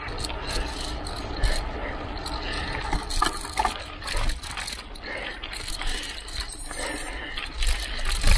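Mountain bike riding off pavement onto a dirt trail covered in dry leaves: tyres rolling over leaves and dirt, with the bike rattling and clicking irregularly over the rough ground, and a low rumble of wind on the microphone.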